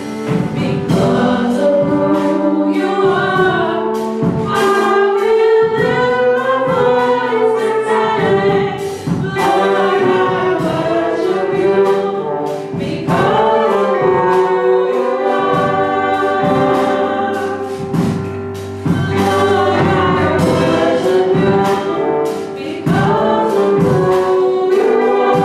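Two women singing a gospel song, accompanied by a live brass band of trumpets and trombones with drums keeping a steady beat.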